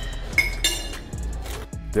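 A metal fork clinking against a ceramic plate: a couple of sharp clinks with a brief ringing about half a second in, over background music.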